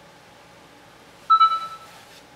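A single short notification chime from a Galaxy Nexus phone about a second and a half in, a bright tone that rings out and fades within half a second, announcing a new voicemail notification as the phone comes up on its lock screen. A low steady hiss lies underneath.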